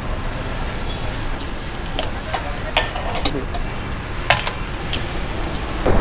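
Motorcycle engine running with a steady low note, broken by a few sharp clicks and knocks.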